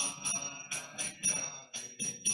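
Kartals, small hand cymbals, struck in a steady kirtan rhythm of about four strokes a second, each stroke ringing bright and metallic, with faint sustained musical tones beneath.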